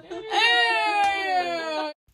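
A woman's long, high-pitched wail of laughter, held for over a second with the pitch slowly falling, cut off suddenly near the end.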